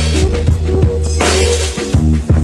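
Hip-hop beat with a steady deep bass line, cut across by two loud crashing hits, one at the start and one just past a second in.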